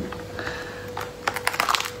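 Durian husk being pried apart by hand, the thick spiky shell splitting with a quick run of small sharp crackles about a second in.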